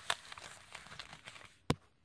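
Fabric bag being handled and opened by hand: a soft rustle, then one sharp click near the end.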